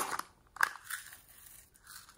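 A small plastic container of sequin glitter being handled: a sharp plastic click about half a second in, a smaller click soon after, then faint rustling as the glitter is shaken out into a glass dish.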